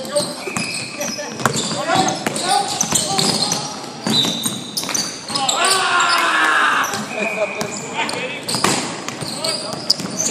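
Live indoor basketball play on a hardwood court: a ball bouncing with sharp knocks, a few short high squeaks of shoes, and players' voices calling out, loudest about halfway through, all echoing in the gym.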